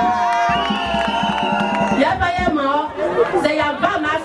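A woman singing a chant into a microphone, with a crowd joining in. For about the first two seconds several voices hold long, steady notes, then the rapid, chant-like singing picks up again.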